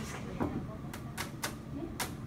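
Short murmured voice in a classroom, with three sharp clicks or taps about a quarter second apart around the middle.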